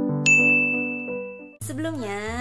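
A single bright ding from a subscribe-button click sound effect, sounding about a quarter second in and ringing on as one steady high tone over keyboard background music. Both the ding and the music cut off suddenly about a second and a half in.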